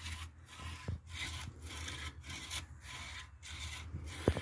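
Hand saw cutting into a felled tree trunk, in steady back-and-forth strokes of about two a second.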